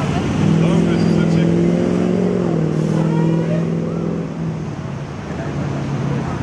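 A motor vehicle's engine running nearby with a low, steady hum. Its pitch drops slightly about halfway through and it fades away after about four seconds, over a background of street noise.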